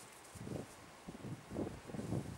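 A few soft, low scuffs and thuds, about four in two seconds, of dogs' paws moving on grass as the adult dog circles the puppy.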